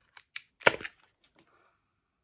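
Plastic wax melt clamshell being handled and opened: a quick series of sharp clicks and crackles in the first second, the loudest about two-thirds of a second in, then it goes quiet.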